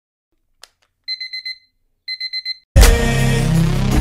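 A digital alarm clock beeping in two quick bursts of high beeps, after a single click. About three seconds in, loud music starts.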